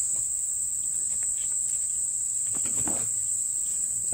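Steady, unbroken high-pitched trilling of an insect chorus in summer vegetation.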